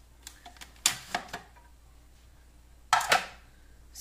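Clicks and knocks of a Bosch food processor's plastic lid and feed tube being handled and taken off the bowl, the motor stopped: a few light clicks in the first second and a half, then two sharper knocks about three seconds in.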